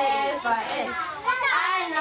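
A group of children shouting and cheering together, many voices overlapping, with rising and falling calls in the middle.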